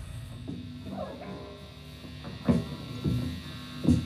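A live rock band's amplifiers humming in a lull after a song, with a few short shouts and stray low knocks.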